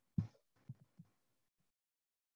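A few faint, dull thumps of computer keys being typed: the first, about a fifth of a second in, is the loudest, with two weaker ones within the next second.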